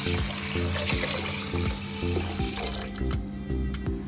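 Water poured from a glass jug into a pressure cooker onto chopped vegetables and green gram: a steady splashing pour that thins out about three seconds in.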